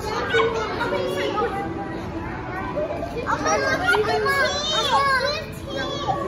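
Children's voices: kids talking and calling out with high-pitched voices, louder and busier in the second half.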